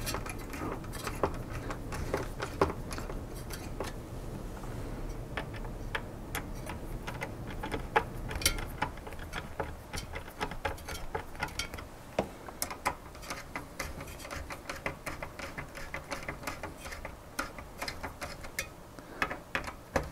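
Mounting screws of a CPU cooler bracket being turned down by hand with a screwdriver: a run of small, irregular metal clicks and ticks as the screws are tightened a few turns at a time.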